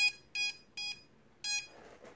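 Drone ESCs beeping through their brushless motors: four short beeps of the same pitch at uneven spacing, as the flight controller saves and reboots after ESC calibration.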